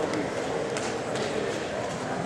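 Crowd hubbub in a large tournament hall: many indistinct voices at once, with a few faint short knocks.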